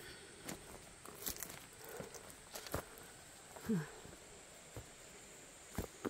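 Footsteps on loose flat stone shards and dry leaves: irregular soft crunches and clicks. A short, low sound with a falling pitch, louder than the steps, comes a little under four seconds in.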